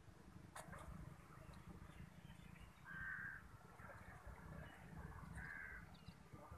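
Two faint crow caws, one about three seconds in and another near the end, over a low rumble.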